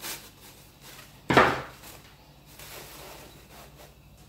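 Scissors knocking once onto a hard floor about a second in, loud and sudden. Soft rustling of taffeta bunched over crinoline runs under it.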